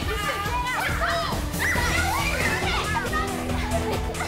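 Several children shouting, squealing and laughing excitedly, with a steady music bed underneath.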